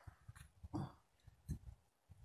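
Faint small clicks and knocks of a flintlock rifle's lock being handled as the pan is readied for priming. A short whine-like voice sound comes just under a second in.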